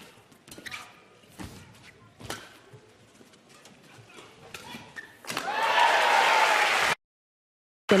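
Badminton rally: sharp racket strikes on the shuttlecock and footfalls on the court, spaced roughly a second apart. About five seconds in, the crowd breaks into loud cheering and applause, which cuts off suddenly after a second and a half.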